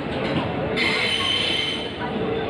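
Passenger train coaches rolling past along the platform, their wheels rumbling on the rails. A high-pitched wheel squeal joins about a second in.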